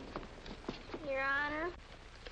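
Scattered light knocks and shuffling steps, then a single drawn-out vocal 'ooh' about a second in, lasting under a second and rising in pitch at its end.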